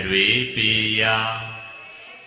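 A man's voice chanting a Buddhist recitation in long held notes: a short phrase at the start, then one note sustained for about a second that fades away.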